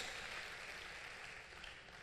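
Faint room tone in a pause in speech, an even hiss that slowly fades.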